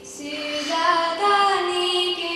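Children's choir singing. A short breath-pause at the start, then the next phrase begins and swells.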